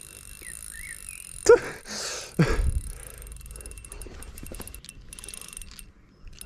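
Spinning reel and rod handling while playing a large hooked pike: faint, quick ticking from the reel through the second half, with knocks and a low rumble of handling. A short voiced exclamation comes about one and a half seconds in.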